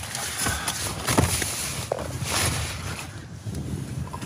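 Nylon tent fabric rustling in several short swishes, with a few soft knocks, as the tent door is pulled back.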